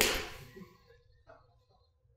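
A 54-degree Edel wedge striking a golf ball: one sharp strike at the start that fades over about half a second. A faint click follows about a second later.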